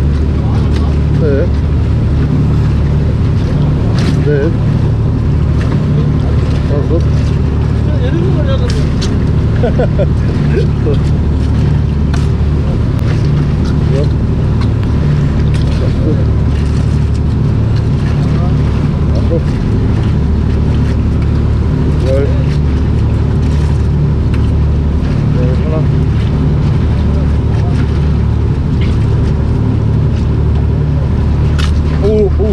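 Fishing boat's engine running steadily with a constant low hum, with faint voices of other people on board.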